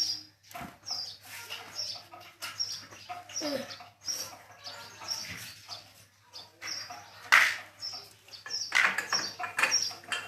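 Irregular metallic clinks and knocks of hand tools working on a motorcycle, with one sharper clank about seven seconds in, while small birds chirp repeatedly.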